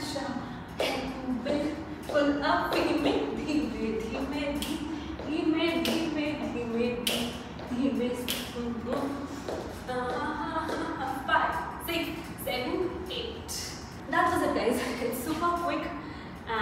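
Sneakers stepping, tapping and shuffling on a wooden studio floor during a dance routine, over a woman's voice with sustained pitched notes.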